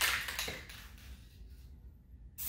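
Aerosol can of hydro-dip activator being shaken, a quick clicking rattle that fades out within the first second.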